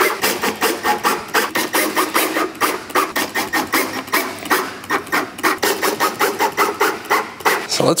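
Compact cordless drill driver driving small screws to fasten plastic cable clips into a wooden board, heard as a rapid, even run of clicks and rattles.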